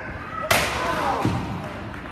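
A single sharp thud from a body impact as two point-sparring fighters in padded gear collide and one goes down to the floor, followed by a man's short "uh".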